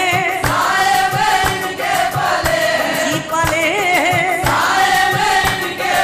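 Qawwali: voices singing with wavering, ornamented pitch over a steady percussion beat of about two strokes a second.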